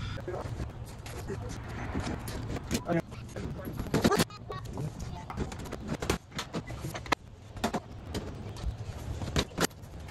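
Scattered clicks and knocks of a large hard-shell roof cargo box being handled and fitted onto the car's roof bars, the loudest knock about four seconds in, over a low hum.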